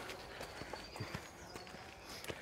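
Faint, irregular footsteps of a few people walking on a dirt path.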